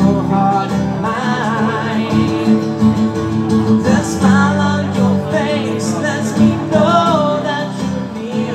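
A man singing a slow country ballad with acoustic guitar accompaniment, the voice carrying the melody over steady strummed chords.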